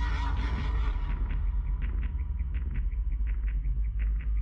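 Trailer sound design: a deep steady low rumble under a regular high ticking, about four ticks a second, with a thin held high tone. A squealing horse whinny sounds in the first second.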